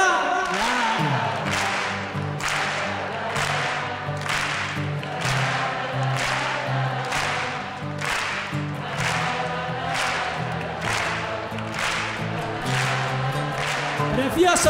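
Concert crowd and band clapping in a steady rhythm, about three claps every two seconds, over a low bass line and many voices singing along.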